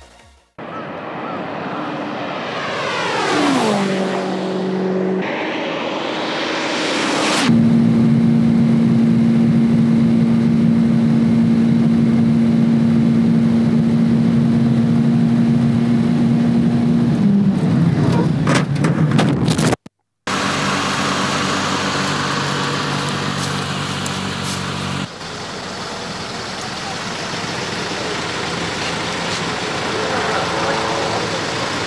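A tuned Nissan S14 Silvia's turbocharged engine held at steady high revs at top speed, heard from inside the car with wind rush. Its note then falls away into a flurry of clatter and knocks as the car crashes. After a brief cut there is a rushing noise.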